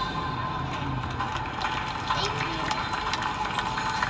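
Audience clapping after the song ends: many irregular claps over a low crowd murmur.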